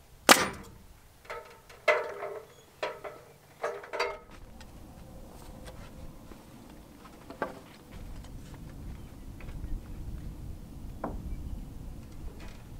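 Siding boards being nailed and handled: one sharp crack, then five ringing wooden knocks over the next three seconds or so. After these come softer scattered taps and a low rumble.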